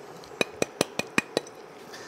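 A white ceramic plate tapped six times in quick succession, about five clicks a second, knocking the last of the dry spices off it into a pan of barbecue sauce.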